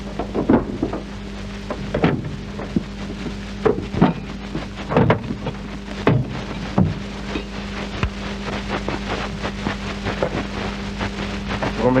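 Hiss, hum and crackle of a worn 1940s optical film soundtrack, with a few short knocks scattered through it.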